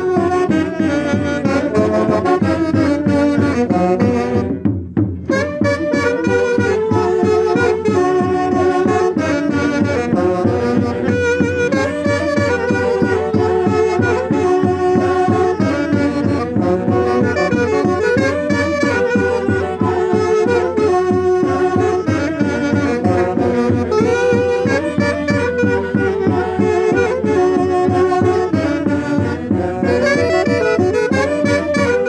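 Two saxophones playing the melody of a Peruvian santiago tune over a steady beat, with a brief break in the playing about five seconds in.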